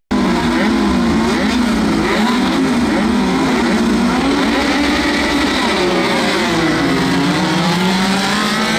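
Engines of a pack of dirt-track midget race cars running together, several pitches overlapping and rising and falling as the drivers work the throttles while rolling in formation before the start.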